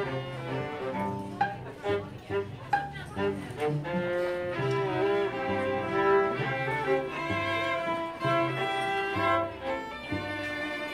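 A string quartet of violins, viola and cello playing live. The first few seconds are short separated bowed notes, then longer held notes over a cello line.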